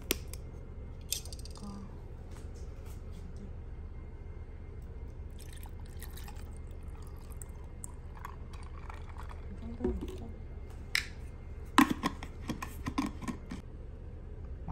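Bottled latte poured from a plastic bottle over ice into a glass mug, with a few sharp clicks and knocks near the end.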